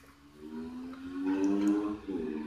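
One long, held, pitched vocal call that starts about half a second in and grows louder toward the end.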